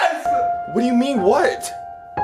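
A steady held tone comes in about a quarter of a second in and carries on, like an added chime or music bed. Over it, in the middle, a man's wordless voice rises and falls.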